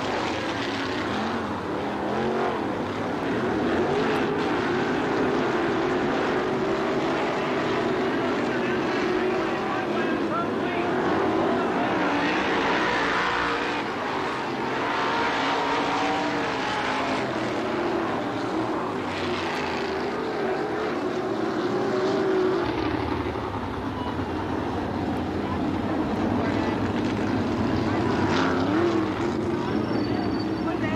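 A pack of winged sprint cars with V8 engines running on track, the engine pitch wavering up and down as the cars circle.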